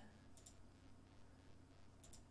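Two quick computer mouse clicks about half a second in, otherwise near-silent room tone.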